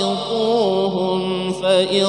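A man reciting the Quran in the melodic tilawah style, in the Hijaz mode, holding long ornamented notes that waver and glide in pitch. He briefly breaks for breath about a second and a half in before starting a new phrase.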